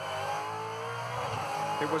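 Supercars V8 race car engine heard onboard: its note sags as the driver eases off, then rises again as the car accelerates.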